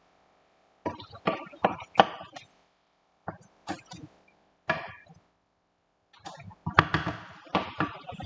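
Wooden spoon knocking and scraping against a stone-coated frying pan while stirring a thick stew of potatoes and chicken offal, in short clusters of sharp knocks with silent gaps between, growing denser near the end.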